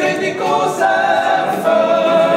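Men's vocal ensemble singing a cappella in close harmony, holding chords that shift a couple of times.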